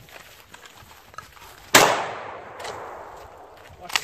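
Two shotgun shots during a 3-gun stage: one about two seconds in, fading out with a long tail, and a second right at the end.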